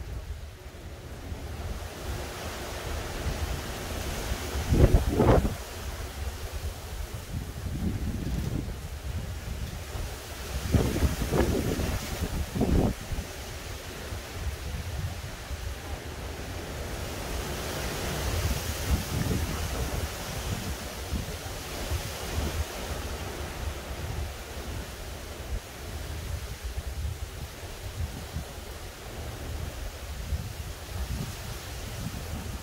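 Gusty wind from Hurricane Ian rushing through the trees. Hard gusts buffet the microphone with a loud low rumble about five seconds in and again from about eleven to thirteen seconds, and a hissing swell follows a little past halfway.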